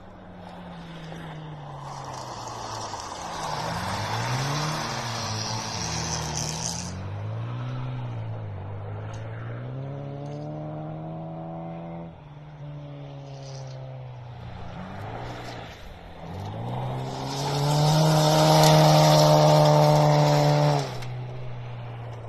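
Rally car engines racing on a gravel track, revving up and down through gear changes with a rushing of tyres on gravel. Near the end a car passes close and loud at high revs, and the sound cuts off sharply.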